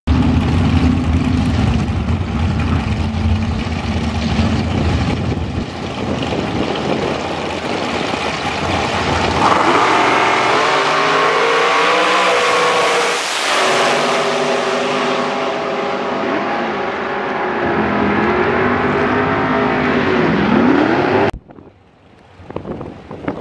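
Dragster engines running loudly at the start line, then launching and racing down the strip, their pitch rising and falling as they pull away. The sound cuts off suddenly about 21 seconds in.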